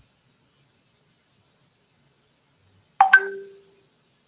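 Near silence, then about three seconds in two quick sharp clicks and a short ding that rings on a few steady notes and fades out within a second.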